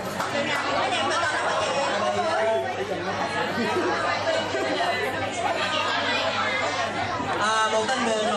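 Speech and chatter: a woman talking into a handheld microphone, with other people talking in the room.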